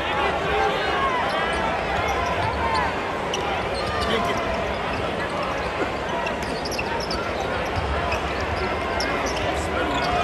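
Live college basketball game in an arena: sneakers squeak in many short chirps on the hardwood court and the ball is dribbled, over a steady murmur of crowd chatter.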